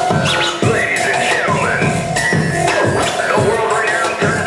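Hip-hop DJ routine: a beat with samples being scratched back and forth on a Pioneer CDJ jog wheel, the scratches sliding quickly up and down in pitch over the beat.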